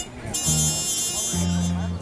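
Big band playing a swing tune outdoors, the horn section sounding held low notes in a slow riff.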